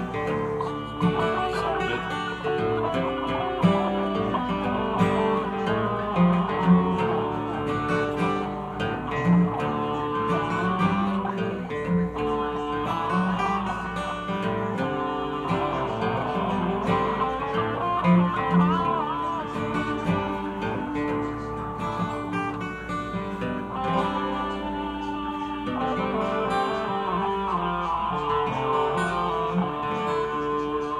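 Electric guitar played through an amplifier, a jam of lead lines with wavering bent and vibrato notes over steadily held lower notes.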